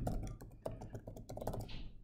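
Typing on a computer keyboard: a quick, irregular run of key clicks that thins out near the end.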